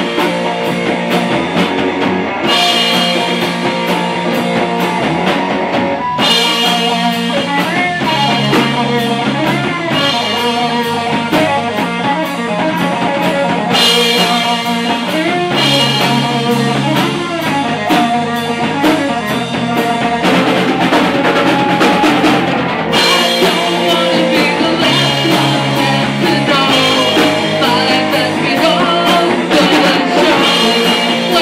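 Live rock band playing loud: electric guitar, bass and drum kit with cymbals, with a singer on vocals. The cymbals drop out briefly a few times as the song moves between sections.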